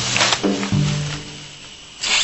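Background music with a sudden snarl from a young tiger at the start. The music then fades away.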